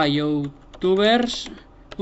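A man's voice saying two drawn-out words, with faint clicks of computer keyboard typing between them.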